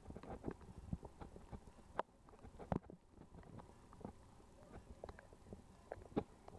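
Irregular soft clicks and knocks, several a second and uneven in strength, over a faint hiss.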